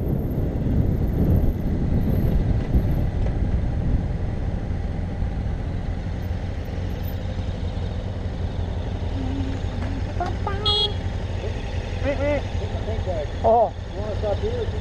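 Motorcycle engine and wind rumble as a BMW F800GS parallel-twin slows and rolls to a stop, then the bike idling steadily beside another idling motorcycle. Voices are muffled inside a helmet near the end.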